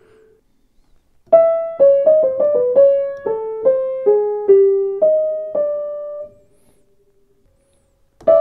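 Welmar A4 upright piano playing a short single-note melody in the middle register, about a dozen notes over five seconds. The last note is held and then stops suddenly when it is released.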